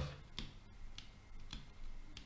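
Three faint, sharp clicks about half a second apart: a stylus tapping on a tablet as digits are handwritten.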